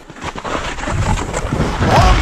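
A rushing, wind-like noise that swells from quiet to loud, heard during a break in the backing music.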